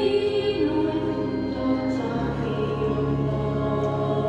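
Women's church choir singing in long held notes. A low steady tone joins underneath about two seconds in.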